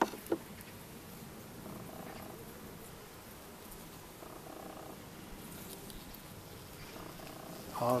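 Honeybees humming steadily over an open hive while a frame is pulled out. A hive tool prying the frame loose gives two sharp clicks right at the start.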